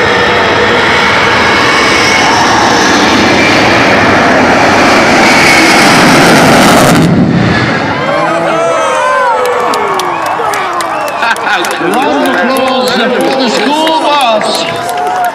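Jet engine of a jet-powered school bus running at high power, a loud steady roar that grows a little louder and then cuts off suddenly about seven seconds in. After that, people talking.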